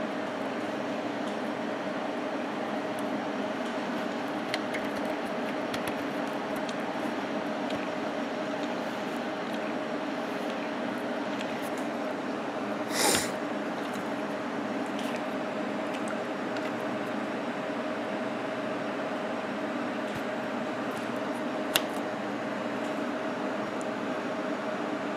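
A steady hum holding a constant tone runs throughout. Over it come a few faint clicks, a short scraping rustle about halfway and a sharp click near the end, as a control knob is pulled off its shaft and handled.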